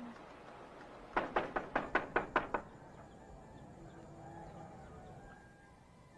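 A quick series of about eight sharp knocks, a little over a second long.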